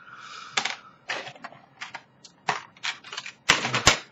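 Handling noise: a brief hiss, then a series of sharp, irregular clicks and crinkles as a plastic blister pack of cartomizers is picked up and handled, loudest in a cluster near the end.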